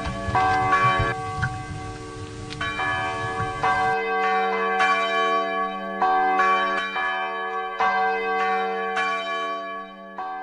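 Church bells ringing, a new stroke about every second, the strokes overlapping as each rings on. Music from the intro underneath stops about four seconds in.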